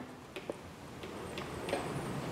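A few faint small clicks of hands handling the metal hose bolt and hydraulic brake hose at a bicycle's disc brake lever, over quiet room tone.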